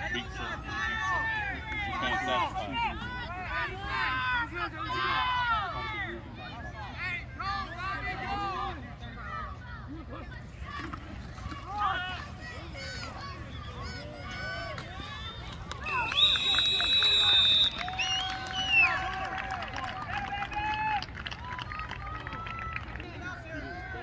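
Spectators' voices shouting along the sideline during a youth football play, with a referee's whistle blown loud and held for about a second and a half roughly two-thirds of the way through.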